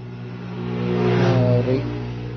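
A motor vehicle's engine going past, its hum swelling to a peak about a second and a half in and then easing off.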